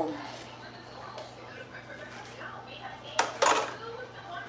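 Metal cookware clattering: two quick, loud clanks a little over three seconds in, after a quiet stretch with faint small knocks.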